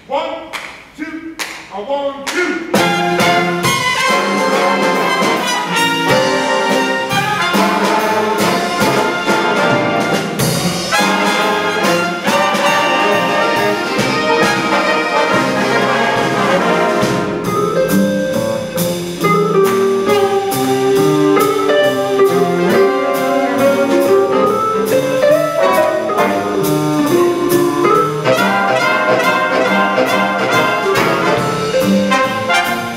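Big band playing jazz, led by trumpets and trombones: a few separate notes open it, then the full band comes in about two and a half seconds in and plays on.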